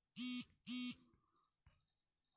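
A Redmi 4 phone's vibration motor giving two short buzzes about half a second apart. Each buzz spins up, holds, and winds down, signalling an incoming carrier message.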